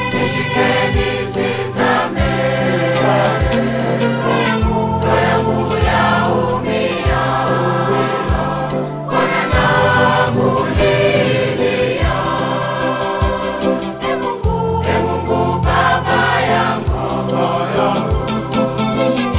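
Church choir of men's and women's voices singing a Swahili gospel song in harmony, over an instrumental backing with a sustained bass line and a steady drum beat.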